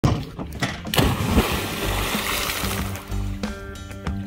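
A person bomb-jumping into deep water: a sharp splash about a second in, then the hiss of spray and churned water. Music comes in over it near the end.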